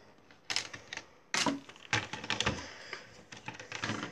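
Hard plastic Lego pieces clicking and clattering as a plastic sword and a brick-built robot figure are handled and set down on a Lego baseplate. A rapid, irregular string of sharp clicks, loudest about half a second and a second and a half in.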